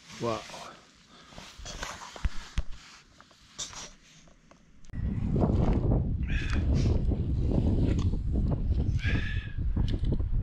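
Wind buffeting the microphone: a loud low rumble that sets in about halfway through, after a few seconds of quieter rustles and light clicks.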